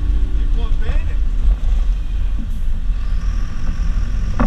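City bus engine and tyres running on a wet road, a steady low rumble heard from inside the cab.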